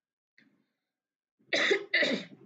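A woman coughing twice in quick succession, about a second and a half in, her hand held to her mouth.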